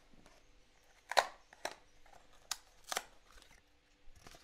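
A small cardboard retail box being handled and opened: a few short sharp clicks and scrapes of card, starting about a second in, the first the loudest.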